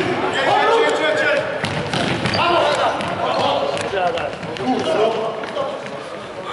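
Indistinct men's voices calling out across an echoing sports hall, broken by sharp thuds of a futsal ball being kicked and bouncing on the wooden floor.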